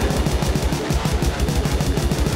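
Heavy metal music with distorted electric guitar over fast, steady drumming, no vocals.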